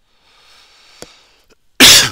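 Pen scratching faintly on paper as numbers are written, with a light tap about a second in. Near the end comes a sudden, short, loud burst, the loudest sound.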